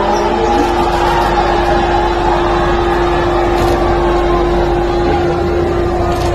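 A boat's engine running with a steady drone over a wash of background noise.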